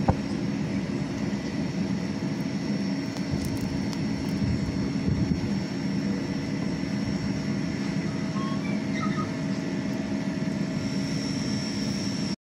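Steady roar of a small metal-melting furnace's electric air blower, with a constant motor whine, running while molten aluminium is poured into a lost-foam sand mould.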